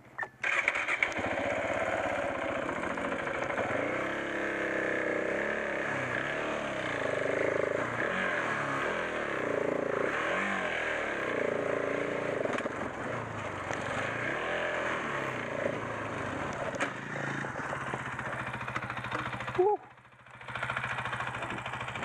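KTM 690 Enduro R's single-cylinder engine revving up and down under load while riding over rocky ground, its note rising and falling again and again. It comes in loud about a second in and drops away briefly near the end.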